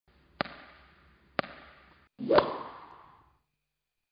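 Intro sound effects: two sharp hits about a second apart, then a louder whoosh ending in a hit, fading out about three and a half seconds in.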